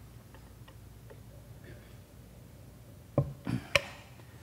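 A few faint ticks, then near the end a cluster of knocks and a sharp click: a plastic water bottle being handled and picked up off a tall stand.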